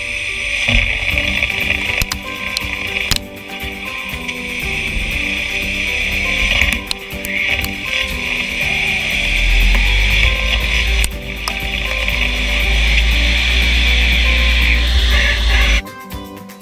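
CNC lathe turning a steel workpiece: a steady high-pitched cutting hiss from the insert on the spinning part, with a few brief dips, stopping just before the end. Background music plays underneath.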